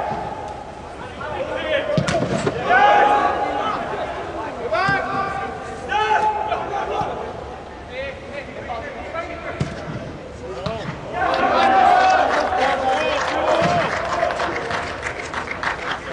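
Soccer players shouting short, held calls to one another during play, several times over, with the thud of the ball being kicked now and then.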